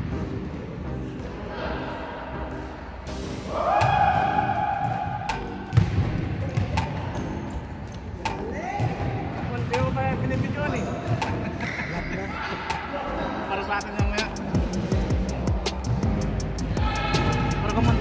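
Basketballs bouncing and players' feet and voices on an indoor gym court during a pickup game, with repeated short thuds and occasional shouted calls, echoing in a large hall.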